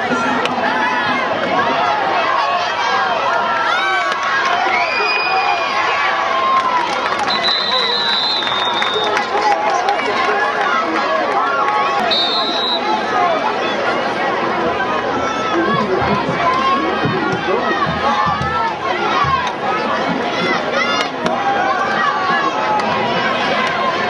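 Crowd of spectators at a stadium, many voices talking and shouting over one another at a steady level, with a few brief high steady tones cutting through.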